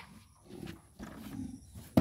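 A stretch of faint low rustling, then a single sharp pop right at the end as a rubber balloon bursts.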